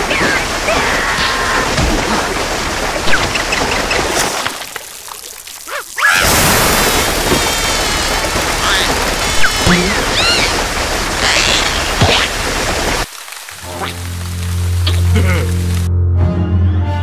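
Cartoon water-spray sound effect: a loud, steady hiss of spraying water jets with squeaky cartoon vocal cries over it, dropping away briefly twice. Music with steady low notes comes in near the end.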